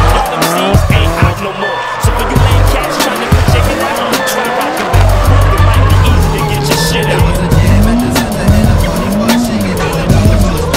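A drift car's engine revving hard, its pitch swinging up and down, with the tyres squealing as the car slides sideways. Music plays over it.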